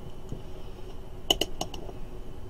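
Rotary range selector of a handheld digital multimeter clicking through its detents as it is turned to another range: four quick sharp clicks in the second second.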